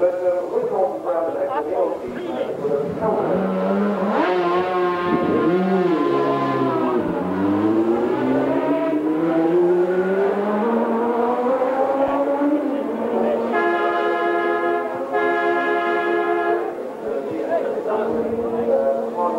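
Racing motorcycle engine being revved in the pits among voices, its pitch swooping down and then climbing steadily for several seconds. Near the end come two long, steady held tones.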